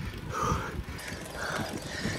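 A cyclist breathing hard while climbing on the bike, two noisy breaths about a second apart, over a low rumble of wind and tyres on the road.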